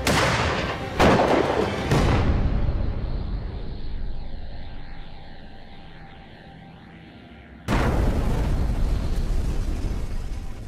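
Shotgun firing a cartridge loaded with canna seeds in place of lead shot: a sudden blast, then two more loud surges about a second apart, fading into a low rumble. Another loud burst strikes near the end.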